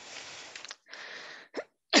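A speaker's breath noise close to the microphone, two long breaths of about a second each, then a short cough right at the end.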